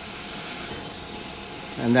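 Stir-fry of chicken and vegetables sizzling steadily in a hot cast iron wok on medium-high heat.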